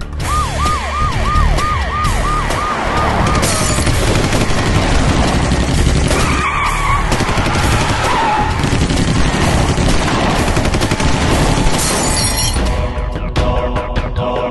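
A police siren in quick repeated falling sweeps, about two and a half a second, for the first few seconds. It gives way to a dense mix of gunshots and crashes under loud action music.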